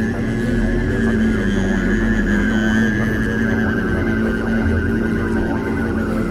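Steady didgeridoo drone on one low note, its tone shifting in the middle range, with a high thin overtone wavering above it.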